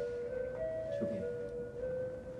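Background score of the TV drama: a slow melody of held notes that step up and down in pitch, a few notes a second.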